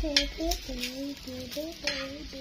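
A high voice hums or sings a wordless tune in short held notes that step up and down, over a steady hiss, with a few sharp clicks.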